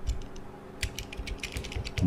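A quick, irregular run of clicks from a computer mouse and keyboard, most of them packed into the second half.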